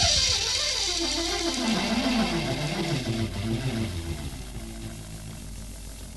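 Live progressive rock band's music dying away: the drums stop, and a single sustained note slides down in pitch, wavers, then fades out over a few seconds. Taken from the mixing-desk feed, so the bass guitar is missing.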